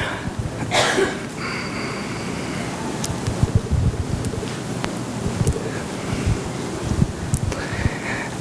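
Light laughter and low murmuring from a room of people, with the speaker chuckling, in reaction to a joke.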